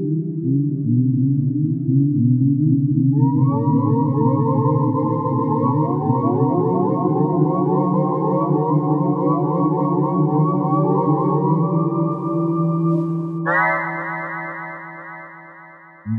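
Synthesizer music score of sustained, droning chords. A higher layer comes in a few seconds in, a brighter chord enters near the end, and then the music fades out.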